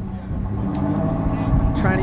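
Fishing trawler's engine running steadily, a low rumble on deck.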